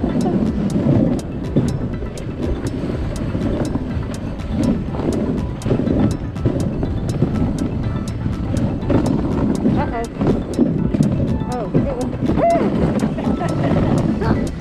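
Dog sled running over a snow trail behind a team of sled dogs: a steady, rough rushing noise from the runners on the snow, with a faint regular ticking about three times a second.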